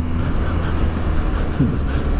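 BMW GS boxer-twin motorcycle cruising on the open road, heard from a camera on the bike: a steady low engine rumble under rushing wind noise.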